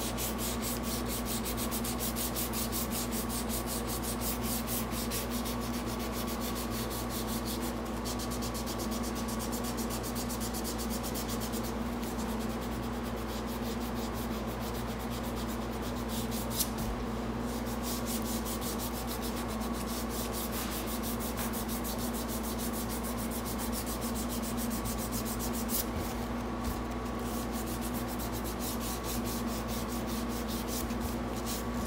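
Sandpaper rubbed by hand along a wooden knife handle, in quick, even back-and-forth strokes, over a steady low hum.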